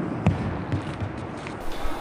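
A shot put bouncing on a hardwood gym floor after an underhand toss: one sharp knock about a quarter second in, then a few fainter knocks as it settles.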